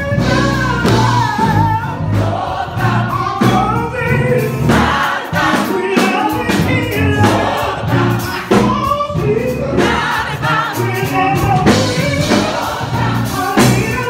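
A forty-voice gospel choir singing.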